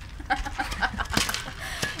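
Short, choppy bursts of giggling and laughter, with a few sharp clicks mixed in.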